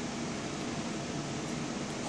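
Steady, even background hiss of room noise with no distinct event standing out.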